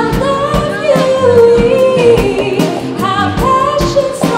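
Live pop band playing: a woman sings long held, gliding notes over electric guitars, keyboard and a steady drum beat.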